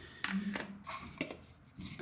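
Handling noise: a few light clicks and rustles as a hand reaches for and picks up a plastic foam-cannon bottle for a pressure washer, the first and loudest about a quarter second in.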